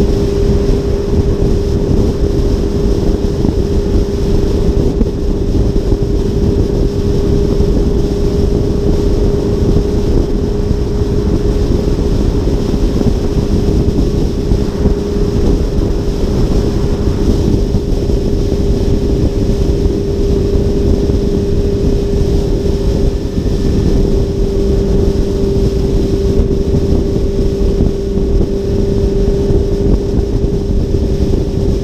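Steady wind noise on a hood-mounted GoPro and road noise from an Audi R8 cruising at freeway speed, with a constant drone underneath at an unchanging pitch.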